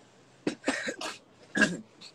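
A person coughing into a hand, about four short coughs in a row, the last one the loudest.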